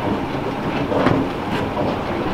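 Escalator running steadily, its moving steps and drive heard up close, with a continuous mechanical rumble and faint irregular ticks.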